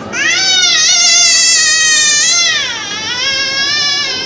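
A baby crying hard in pain as her ear is pierced: one long, high-pitched wail that rises and holds, dips before the three-second mark, then rises again.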